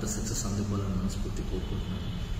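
A man speaking in short phrases over a steady low hum.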